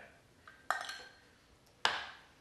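Kitchenware set down on a countertop: two sharp clinks about a second apart, each ringing briefly, from a small metal pitcher and its glass jar being put down after pouring.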